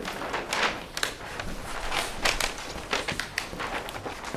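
Large paper plan sheets being handled and flipped over on an easel, rustling and crackling in a string of short, irregular scrapes.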